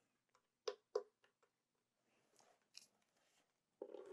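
Two sharp clicks about a quarter second apart, a little under a second in, from switching on the AC output of a Flashfish 560 portable power station, then a faint tick; otherwise near silence.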